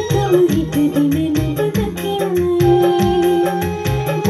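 A woman singing a Sinhala song through a microphone and PA over recorded backing music with a steady hand-drum beat and keyboard.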